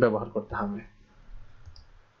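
A man's voice speaks briefly, then quieter sound follows with a click, typical of a computer mouse clicking to advance a presentation slide.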